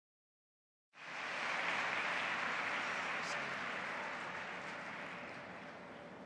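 Silence for about the first second, then applause from a large audience cuts in suddenly and slowly dies away.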